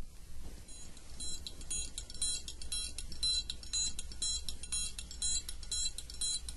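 Vinyl record playing the quiet opening of a jazz-funk track: at first surface noise over a low hum, then about a second in a light, high, ringing percussion pattern starts in a steady rhythm of about two strokes a second.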